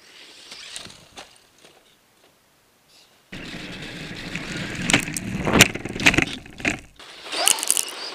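Skis sliding over packed snow, picked up close by a camera on the ski: a steady scraping hiss that starts suddenly a few seconds in, with sharp knocks as the skis run over bumps.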